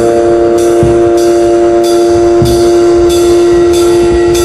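Instrumental heavy post-rock/metal: distorted electric guitar holding a sustained chord over a drum kit, with cymbals struck in a steady pulse a little under twice a second and bass-drum hits beneath.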